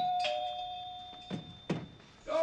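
Two-note doorbell chime, a higher note then a lower one, ringing out and fading over about a second and a half. Two short thuds near the end.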